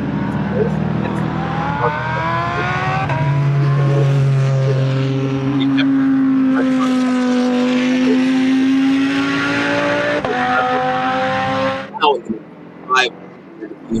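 A GT race car's engine accelerating hard past trackside, its pitch rising through the gears with upshifts about three seconds and ten seconds in. The sound cuts off abruptly near the end.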